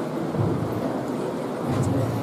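Steady low rumbling room noise of a large hall crowded with a seated audience.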